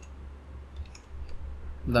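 A few faint, spaced-out computer keyboard key clicks as text is typed, over a low steady hum. A man's voice starts right at the end.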